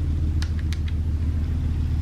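A steady low hum with a few faint light taps in quick succession about half a second in.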